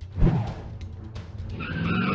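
A heavy thud about a quarter second in, then a loud screeching roar sound effect with several layered tones for a robot T. rex, starting about a second and a half in, over background music.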